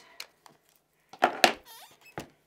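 A few sharp plastic clicks and knocks, loudest a quick cluster of about three just past the middle, from an ink pad dabbed onto a clear stamp on an acrylic stamp platform.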